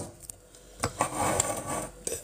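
Close handling noise: a single click, then about a second of rustling and rubbing, as a knit cardigan is handled near the microphone.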